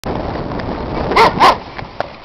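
An Alaskan malamute barks twice in quick succession, two short loud barks over a steady rushing noise.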